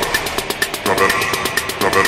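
Background music: a fast, pulsing electronic track with a steady beat about twice a second.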